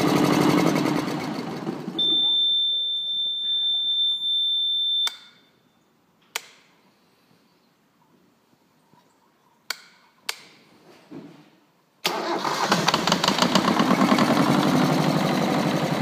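Volvo Penta MD2010 two-cylinder marine diesel running, then shut off about two seconds in, when the instrument panel's alarm buzzer sounds one steady high tone for about three seconds. A few sharp clicks follow in the quiet, and about twelve seconds in the engine starts at once and runs again.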